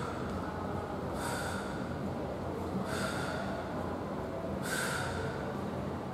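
A woman's sharp breaths out, three in all, about one every two seconds in time with swinging a light dumbbell forwards and back, over a steady low hum.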